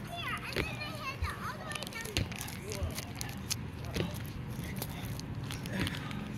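Children's voices calling and playing in the background, with scattered light knocks.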